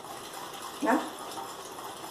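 Wire whisk beating egg yolks and sugar in a glass bowl: a soft, steady scraping and rattling of the wires against the glass. The yolk mixture has already been beaten pale.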